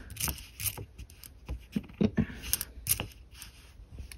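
Pennies clicking against one another as fingers slide them one at a time off a stacked row: a series of irregular light clicks.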